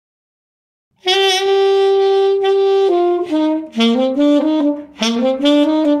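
Solo saxophone playing the melody of a ballad: a long held note of about two seconds, then a run of shorter notes stepping down and back up, with brief breaths between phrases.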